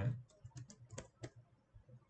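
Computer keyboard being typed on: a quick, uneven run of separate keystrokes that stops about a second and a half in.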